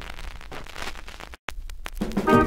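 Surface crackle and hiss of a vinyl LP in the quiet groove between tracks. About one and a half seconds in it cuts to dead silence for a moment, followed by a few sharp clicks.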